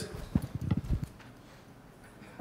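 A few soft, low knocks in the first second, then quiet room tone.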